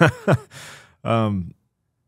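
Short wordless voice sounds: a quick falling laugh-like exclamation, a breathy sigh, then a brief hummed 'mm', after which the sound cuts off to silence for the last half second.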